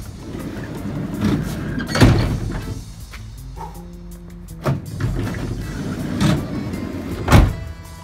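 Mercedes-Benz Sprinter van's sliding side door worked by hand with no power opener: it rolls back and stops with a loud bang about two seconds in, then slides forward and slams shut near the end, with smaller knocks between. Background music plays underneath.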